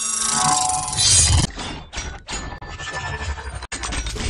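Intro sound effects for an animated channel logo: a bright, crashing burst with ringing tones that cuts off sharply about one and a half seconds in, followed by a choppy stretch of sound-effect music with low thumps.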